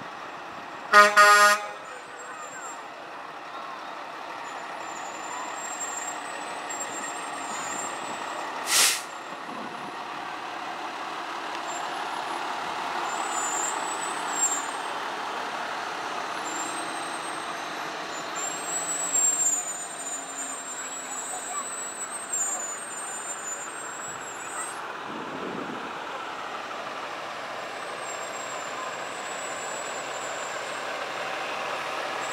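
Fire truck's horn blown in a short double blast about a second in, then the ladder truck's diesel engine running as it rolls slowly past. A short sharp noise comes about nine seconds in.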